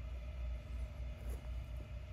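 Low steady background rumble with a faint steady hum and a couple of light ticks.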